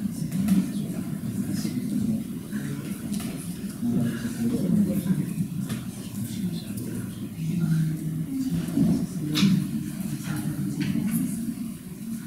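Muffled, indistinct voices talking, with two light clicks late on.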